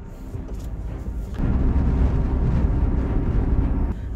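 Low rumble inside the cab of a Nissan pickup truck as it picks up speed under the throttle. The rumble steps up sharply in level about a second and a half in and stays loud.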